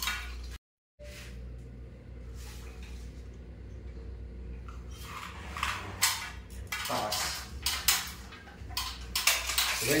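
Scattered light clicks and clinks, most of them in the second half, over a steady low hum. A voice comes in near the end.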